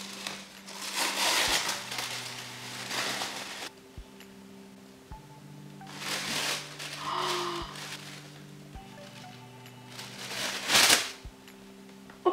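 Wrapping paper rustling and crinkling in bursts as a parcel is unwrapped by hand, loudest near the end, over faint background music with held notes.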